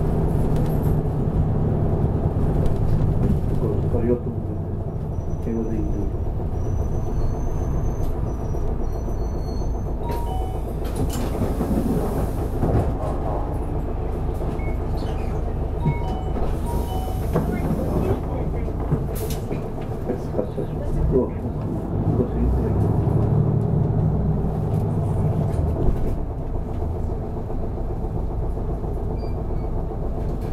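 Interior of a city bus on the move: engine running and road rumble heard from inside the cabin, with the bus slowing to a crawl in the second half. Voices, most likely onboard announcements or passengers, can be heard over the engine.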